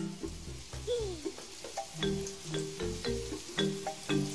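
Simple tune of short struck notes, as a small mallet instrument is played for a puppet musician. There is a falling slide about a second in, then from halfway a steady run of notes at about three a second.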